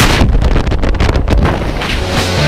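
Loud freefall wind buffeting a tandem instructor's glove-mounted camera microphone, a fluttering rush of air heavy in the low end.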